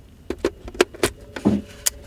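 A series of about six sharp clicks and knocks from handling a Nikon 70-200mm f/4 telephoto zoom lens mounted on a camera body. One click in the middle has a short ringing tone after it.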